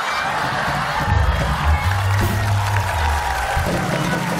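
Studio band music playing, with a heavy bass line coming in about a second in, over studio audience crowd noise.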